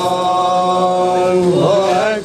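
A single voice chanting an Islamic religious chant, holding one long steady note for about a second and a half. Near the end it breaks into quick ornamented turns.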